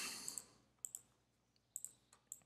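Three pairs of faint clicks from a computer mouse or trackpad, as drawn annotations are cleared from the screen.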